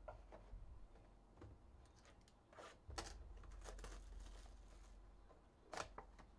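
Mostly quiet, with a few faint rustles and soft taps of a cardboard trading-card box and cards being handled, the clearest just before the end.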